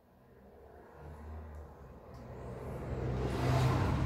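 A road vehicle passing, its rumble growing steadily louder and loudest near the end.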